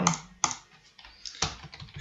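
Computer keyboard typing: about four separate keystrokes with short pauses between them.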